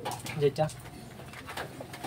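Domestic pigeons cooing in the loft, with a short low coo about half a second in and quieter sounds after it.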